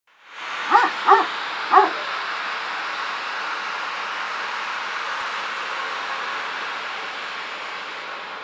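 A dog barks three times in quick succession in the first two seconds, over a steady rushing noise.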